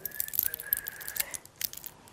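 Small clicks and taps of glassware and bottles being handled on a table, with a faint, high, steady whistle-like tone over the first second and a half.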